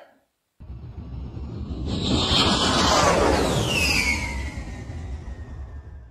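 Outro sound effect: after a brief silence, a whoosh that swells for about two and a half seconds and then fades, with falling whistle-like tones near the middle.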